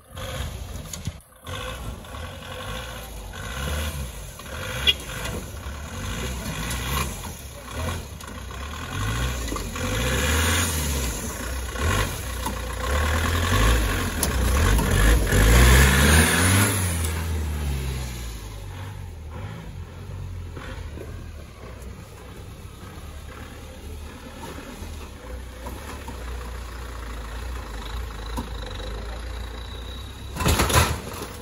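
Off-road 4x4 jeep's engine revving up and down repeatedly as it works through deep mud, loudest about halfway through, then running lower and steadier.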